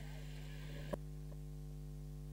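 Steady electrical mains hum in the audio feed, with a single short click about a second in, after which the faint hiss above it goes quieter.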